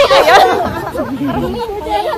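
Only speech: a group of women chattering over one another, loudest in the first half second.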